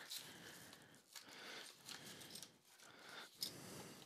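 Faint rustling and crinkling of a padded paper mailer envelope being pulled and torn open by hand, with a few small clicks.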